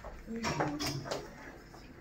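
A metal utensil stirring pasta in a stainless steel pot of boiling water, with a few scrapes and knocks against the pot in the first second, then quieter.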